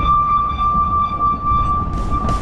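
A steam locomotive's whistle giving one long, steady blast over the low rumble of the moving train.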